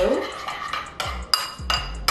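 Metal spoon stirring a liquid marinade in a ceramic bowl, clinking against the bowl's side several times, mostly in the second half.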